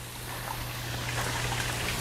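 Brass misting nozzles on a hose-fed flexible line spraying fine water mist: a steady hiss that grows slightly louder, with a low steady hum beneath it.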